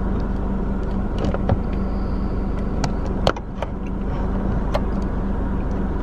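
Steady low hum inside a car, with a constant droning tone, broken by scattered clicks and knocks as a camera is handled and set up on the passenger side. The sharpest knock comes a little past halfway.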